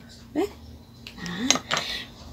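A few light clicks and clinks near the end as a felt-tip marker is put down and the cardboard craft pieces are handled on a table, with two brief wordless vocal sounds before them.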